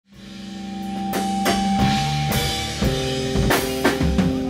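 Metal band playing live: electric guitar holding notes over a drum kit with repeated drum and cymbal hits, fading in from silence over the first second.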